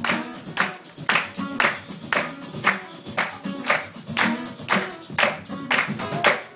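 Live acoustic band music: an acoustic guitar strummed in a steady rhythm, with sharp percussive hits on the beat about twice a second and no singing.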